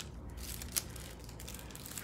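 Faint rustling of paper and card being handled on a desk, with a small tap about three quarters of a second in.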